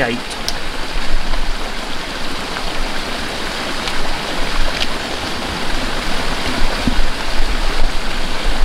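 Steady rush of flowing water from a stream or river running close by.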